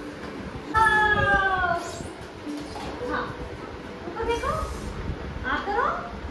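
A child's high whining cry falling in pitch about a second in, then shorter rising cries near the end, with a brief hiss between them.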